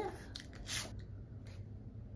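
Sniffing at a small paper sample packet of hand cream held to the nose, with light paper handling: two short, soft airy noises in the first second, then a fainter one about a second and a half in.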